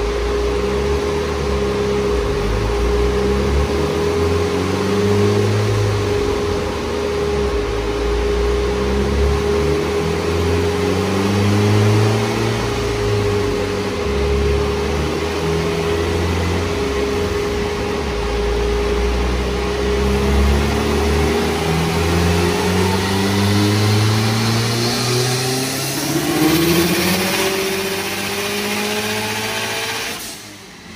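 Built turbocharged Subaru Forester XT flat-four with an FP Green turbo revving on a chassis dyno. The engine note climbs in pitch, drops back and climbs again several times as it runs up through the gears. The last, longest rise peaks near the end.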